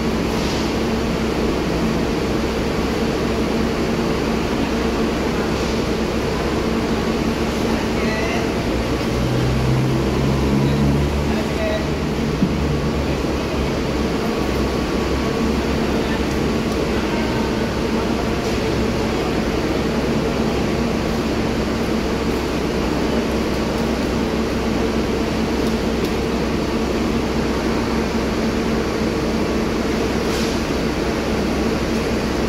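Steady drone of a parked coach bus idling, with a constant hum running through it; a deeper rumble swells briefly about ten seconds in.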